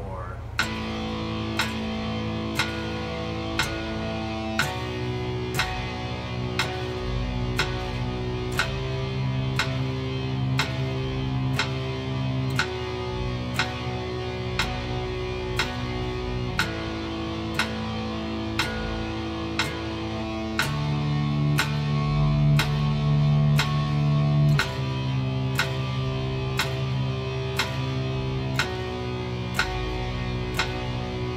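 Electric guitar playing two-note power chords (A5, B5, C5, D5) in steady repeated strokes, changing chord about every four seconds, over an evenly ticking metronome click.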